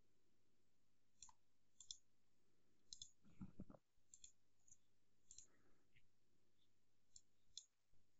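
Faint computer mouse clicks, a few single clicks spread through near silence, with a soft low thump about three and a half seconds in.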